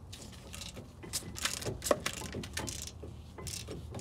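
Socket ratchet clicking as the 17 mm bolts of a Brembo brake caliper are loosened: a run of uneven clicks, with one louder click just under two seconds in.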